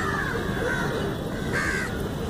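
Crows cawing, several short falling calls, over a steady low rumble.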